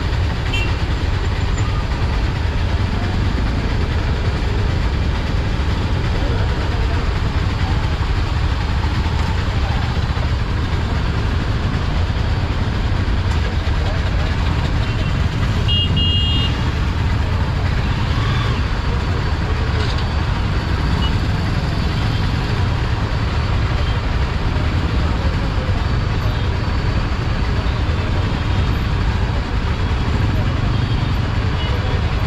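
Dense slow traffic: a steady low rumble of idling and creeping engines, with the bus alongside close by. A brief high-pitched horn toot sounds about halfway through.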